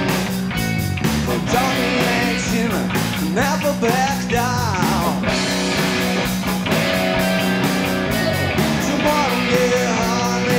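A live rock band playing: electric guitar, electric bass and drum kit, with a lead melody that slides and bends in pitch over a steady bass line.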